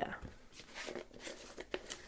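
Faint rustling and a few light clicks from craft materials being handled on a tabletop.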